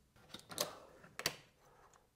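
A few faint, short plastic clicks and rustles, about three over two seconds, as the unscrewed plastic thermostat base and wall plate are handled and lifted off the wall.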